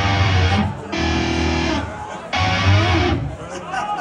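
A death metal band's distorted electric guitars and bass playing live through a concert PA: three loud held chords of about a second each, with short breaks between them.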